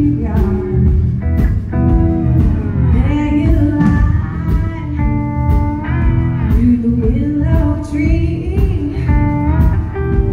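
Live blues-rock band playing: electric guitar with bending notes over drums and bass.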